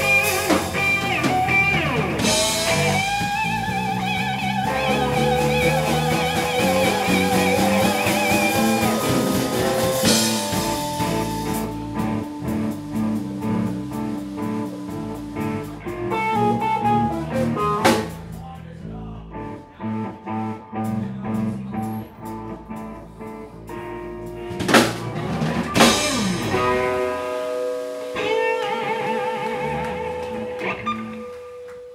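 Live instrumental blues-rock jam on two electric guitars, electric bass and drum kit. Past a third of the way in the band drops to a quieter, sparser passage with a few sharp drum hits, then fills out again near the end.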